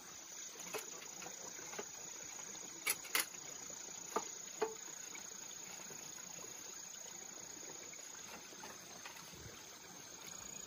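Steady high chirring of field insects, with a few sharp clicks and knocks scattered over the first five seconds, the loudest two close together about three seconds in.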